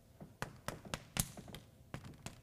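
Chalk tapping and scraping on a chalkboard as a row of short dashes is drawn: a quick run of about five sharp taps, the loudest just past the middle.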